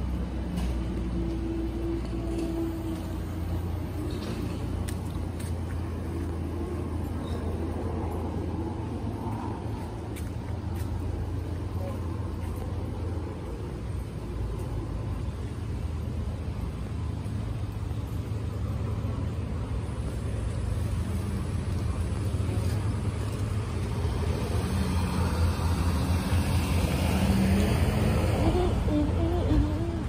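City street traffic: a steady low engine rumble, with a vehicle passing close and growing louder about three-quarters of the way in.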